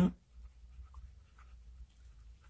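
Pen writing on paper: faint, short scratching strokes as words are written, over a low steady hum.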